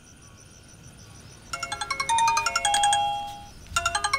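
Mobile phone ringtone: a fast-pulsing electronic melody that starts about a second and a half in, breaks off briefly, then begins again near the end.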